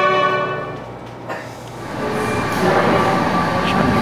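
Solo violin holding a long bowed note that ends about a second in. After that comes a rising, noisy room hum with faint indistinct voices.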